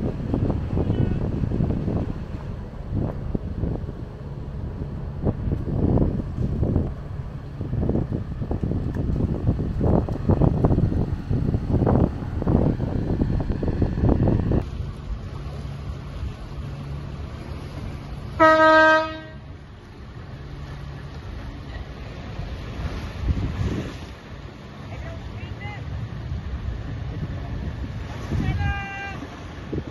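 A boat's horn sounding one short, steady-pitched blast about two-thirds of the way in, the loudest sound here, over a gusty rumble of wind and a low, steady engine hum.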